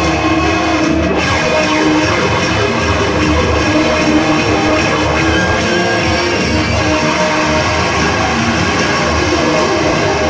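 Loud live band music with electric guitar, playing continuously and densely with held notes throughout.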